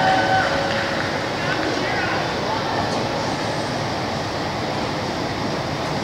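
A steady, even rushing noise with no clear rhythm, after a brief tail of announcer speech at the start.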